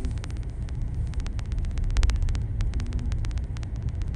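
Car driving slowly, heard from inside the cabin: a steady low engine and road rumble, with many sharp, irregular clicks running through it.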